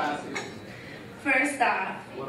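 Champagne glasses clinking and tableware rattling after a toast, with brief voices.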